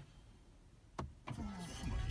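A BMW G31 530i being started by its push button, heard from inside the cabin. There is a sharp click about a second in, then the starter whirs and the 2.0-litre turbocharged four-cylinder catches near the end with a low rumble.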